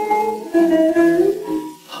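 Instrumental fill of a 1962 Korean trot recording, with plucked guitar notes playing between two sung lines. The singer's vibrato voice comes back in at the very end after a short drop.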